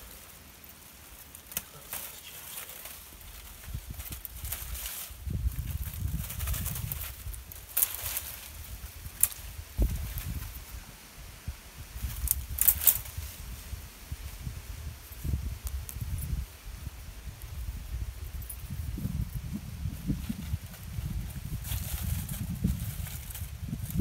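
Bramble canes and leaves rustling and crackling as old growth is pulled off a stone wall and handled. Scattered sharp snaps sound over a low uneven rumble.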